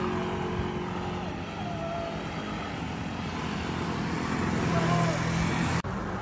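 Road traffic: the engine of a car that has just passed fades away, leaving a steady traffic rumble that swells again as another vehicle goes by, with a sudden brief dropout near the end.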